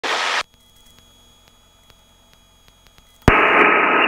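Helicopter radio and intercom audio: a short burst of static at the start, then a quiet stretch with faint clicks. About three-quarters of the way through, the microphone keys with a steady, narrow-band hiss just ahead of a radio call.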